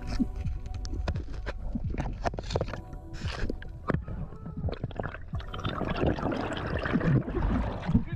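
Underwater sound through a diving camera's housing: crackling clicks and bubbling gurgles as a freediver kicks up through the water. Near the end it thickens into a rushing, splashing wash as he breaks the surface.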